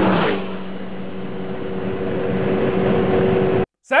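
Road and wind noise inside a car cabin at high motorway speed, with a steady engine drone underneath. It is loudest at the start, eases off, then slowly builds again before cutting off just before the end.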